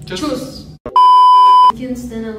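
A single loud electronic beep, one steady high tone lasting under a second, starting about a second in.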